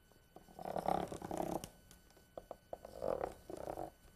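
Two strokes of chalk drawn along a long wooden straightedge on a blackboard, each about a second long, the chalk chattering against the board to leave a dotted grid line. A few light taps come between the strokes.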